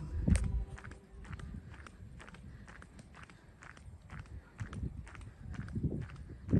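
Footsteps of a person walking at a steady pace on a tarmac road, with one low thump just after the start.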